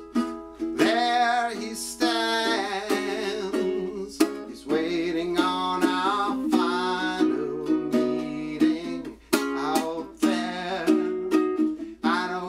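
Ukulele strummed in steady chords, with a man singing over it.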